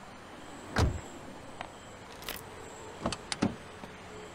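A man handling an open car door and climbing into a car: a loud dull thump about a second in, then a few sharp clicks and knocks near the end.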